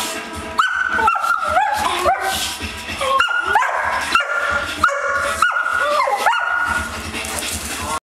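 Dogs play-fighting, giving about a dozen high-pitched yips and barks, each starting sharply and briefly held.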